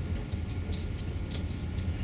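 Steady low room hum with a few faint light ticks and rustles as paper and a sticker sheet are handled on a tabletop.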